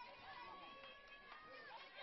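Near silence with faint distant voices calling out, the chatter of players and spectators around a softball diamond.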